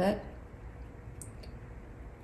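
A woman's voice finishing a word, then quiet room tone with two faint, short clicks close together a little over a second in.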